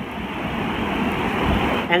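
Steady rushing background noise with no distinct events, swelling a little toward the middle of the pause.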